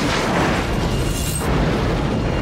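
Film sound effect of a heavy collapse: a continuous rumbling crash of falling rock and debris as dust spills off a rock outcrop.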